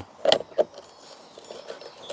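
Plastic string-trimmer head being pushed onto the threaded shaft of a brush cutter's gearbox by hand: a brief clack about a third of a second in, a smaller one just after, then faint handling rattles.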